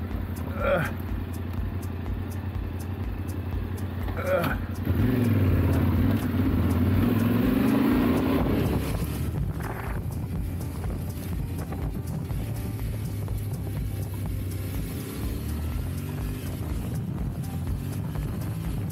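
Yamaha Ténéré 700 parallel-twin engine running under way on a dirt road. The revs climb for a few seconds from about five seconds in as it accelerates, then drop back. Two brief sharp sounds come about one and four seconds in.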